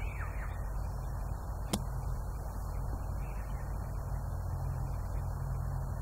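A golf club striking down into bunker sand once, about a second and a half in: a single sharp strike of a bunker shot played with the ball back and the club pressed down into the sand. A steady low background rumble runs underneath.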